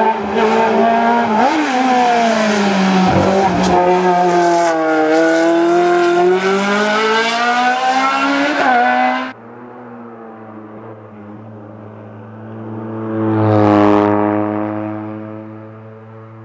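Rally car engine revving hard through a hairpin, its pitch dropping and climbing again with each gear change, then cutting off suddenly about nine seconds in. Later a second engine swells and fades as another car goes by.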